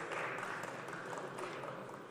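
Scattered applause from members in a large parliamentary chamber, thinning and fading out.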